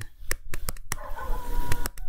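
A string of sharp taps of a stylus on a touchscreen as words are handwritten, several close together in the first second and another near the end, with a faint held tone in the middle.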